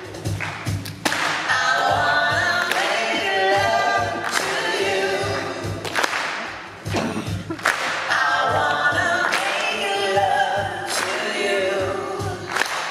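Live acoustic music: several male and female voices singing together in harmony over acoustic guitar, with a steady percussive beat.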